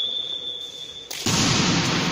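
Referee's whistle blown in one steady high note lasting about a second, the signal for the serve. It is followed at once by a sudden burst of broad noise.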